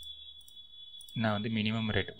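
Computer mouse clicking, about three clicks half a second apart, as zeros are entered on an on-screen calculator, over a faint steady high-pitched whine. A man's voice comes in for the last part.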